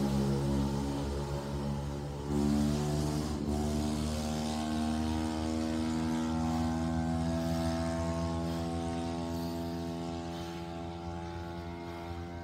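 Background music: sustained synthesizer-like chords over a low drone, with the chord changing about two seconds in.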